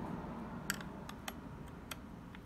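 A few light metallic clicks, about half a second apart, from a 10 mm wrench working a motorcycle battery's terminal bolt.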